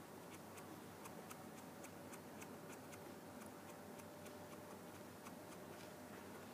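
Near-silent room tone with a faint, quick ticking, about four light ticks a second.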